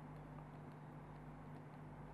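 Near silence: a faint steady low electrical hum with light hiss, the recording's background noise.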